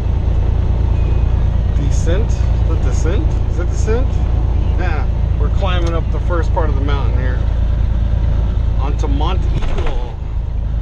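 Steady low drone of a semi-truck's engine and tyres, heard inside the cab while cruising at highway speed.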